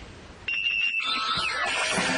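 A brief hush, then about half a second in a short, steady, high electronic tone, followed by a sliding, jingle-like sound: a show's transition stinger leading into a band's music.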